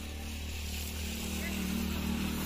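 A vehicle engine running nearby, its hum growing steadily louder.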